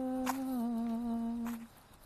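A man humming one long held note that wavers and dips slightly, then stops about three-quarters of the way through, with two short clicks along the way.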